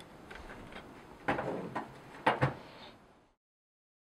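Drum-and-toner cartridge assembly of a Brother laser printer being lifted out and handled: a few plastic knocks and scrapes, the clearest about a second in and again about two seconds in. The sound cuts off suddenly about three seconds in.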